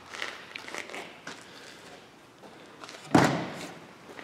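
A Snap-on Epiq mini fridge door swung shut with one solid thud about three seconds in, after a few faint handling knocks.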